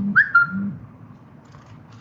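A short, high whistle-like call near the start: a quick upward slide, then a held note lasting about half a second. Two brief low hums sound under it.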